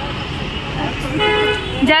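Road traffic running steadily, with a vehicle horn sounding one short honk a little after a second in.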